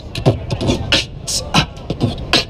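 A hip-hop-style percussive beat: deep kick-drum strokes that drop in pitch, about two a second, with sharp hissing hi-hat sounds between them.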